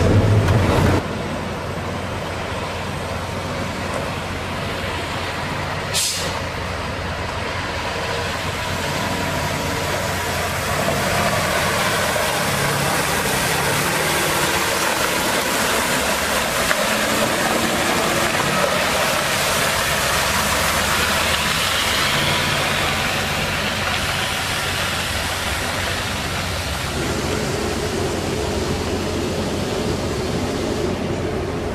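Water truck spraying: a steady rushing hiss of water jetting from the spray heads onto gravel, over the truck's Cummins ISC diesel running to drive the PTO water pump. A short sharp sound comes about six seconds in.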